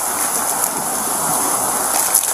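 Steady rushing hiss of water being poured onto a burning fire pit, the embers steaming as the fire is put out.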